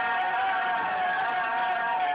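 Music with singing voices holding one long note.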